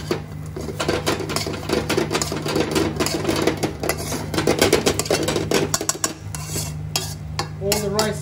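A metal spoon scraping and knocking against a pan while stir-frying rice: a quick, irregular clatter over a steady low hum.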